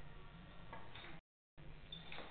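Faint clicks of a pool cue striking a billiard ball and ball striking ball, about three-quarters of a second in, over a low steady room hum; the audio drops out briefly just after a second in.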